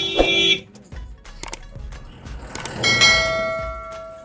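Vehicle horns honking in traffic: one horn sounds until about half a second in, then a second, higher-pitched horn starts about three seconds in and fades out.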